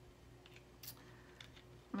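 A few faint, soft clicks from handling a small cosmetic package, over a faint steady room hum.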